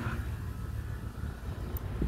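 Low, steady rumble picked up by a handheld phone microphone while walking outdoors, with no distinct event.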